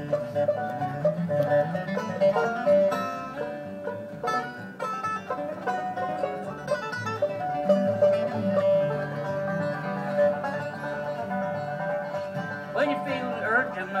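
Acoustic bluegrass string band playing an instrumental break, a quick picked lead over steadily strummed acoustic guitars; a singing voice comes back in near the end.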